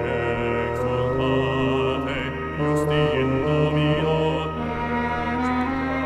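Microtonal chamber music: male voices chanting long held notes over sustained wind and string tones, the pitches shifting every second or so.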